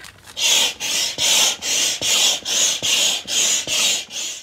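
Advanced Elements Double Action Hand Pump inflating an inflatable kayak's main chamber: a loud rush of air with each pump stroke, about nine strokes at a little over two a second, starting about half a second in.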